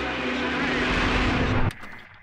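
Sound-design whoosh in a logo sting: a noise swell over held musical notes grows louder for about a second and a half, then cuts off suddenly into a faint ringing tail.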